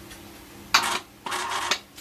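Small electric wire-rope hoist rated 80 kg, run from its pendant button in two short bursts as it pays out cable. The first burst starts with a sharp clunk.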